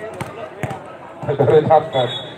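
Volleyball being struck during a rally: a few sharp slaps of hands on the ball. Voices from players and crowd rise in the second half.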